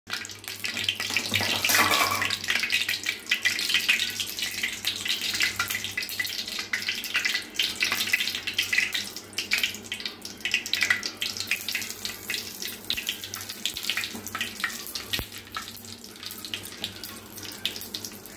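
Mustard seeds spluttering in hot oil in a metal pan: a dense crackle of many small pops that eases off toward the end.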